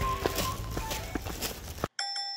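Background music fading under footsteps on a dry, leaf-covered dirt trail, then cutting off suddenly near the end.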